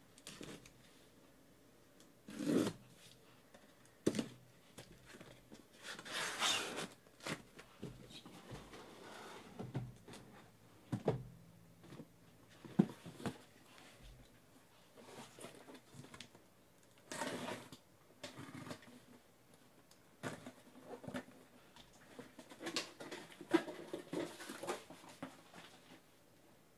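A taped cardboard case being slit open with a blade and unpacked: irregular scrapes and rustles of cardboard and packing tape, with sharp knocks as the boxes inside are handled and set down.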